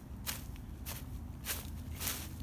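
Footsteps walking through a thick layer of dry fallen leaves, each step a sharp rustle, about three steps in two seconds, over a steady low rumble.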